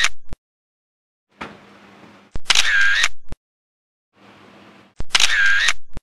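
Camera shutter sound effect, three times, each a sharp click and about a second of shutter noise, with silence between: photos being taken.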